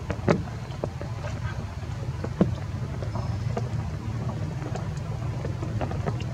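Steady low outdoor rumble with scattered light clicks and taps. The sharpest click comes about a third of a second in and another about two and a half seconds in.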